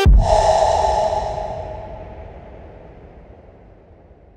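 Closing effect of an electronic dance remix: a hissing noise swell with a low rumble beneath, left ringing after the music cuts off and fading out over about three seconds.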